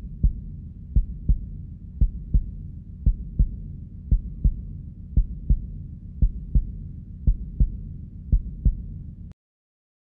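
Heartbeat sound effect: slow double thumps, lub-dub, about once a second over a low rumble. It cuts off suddenly near the end.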